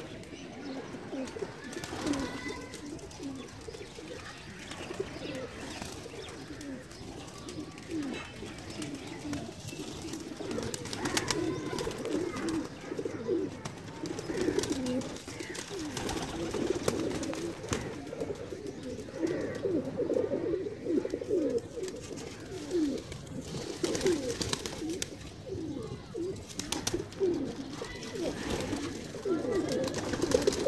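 A loft full of domestic pigeons cooing, many birds at once in a continuous overlapping chorus of low coos, growing a little louder after the first third.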